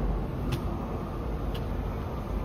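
Low steady rumble of a Taipei Metro C371 high-capacity metro train approaching the station through the tunnel, with two faint clicks about half a second and a second and a half in.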